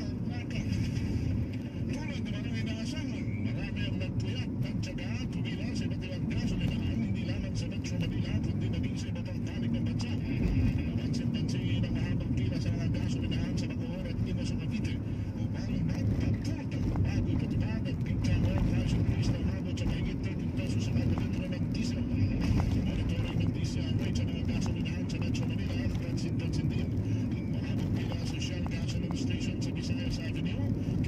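Steady low rumble of a car's engine and road noise heard inside the cabin while driving.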